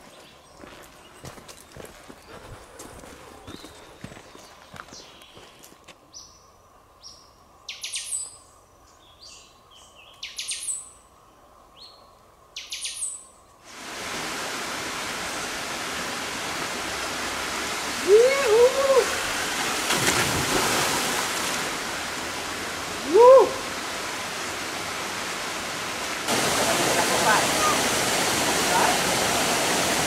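Faint scattered clicks, then several high, falling bird whistles. From about 14 seconds in, the steady rush of water running down a rock slab into a pool, louder near the end as a waterfall. A few short, wavering calls rise over the water around 18 and 23 seconds.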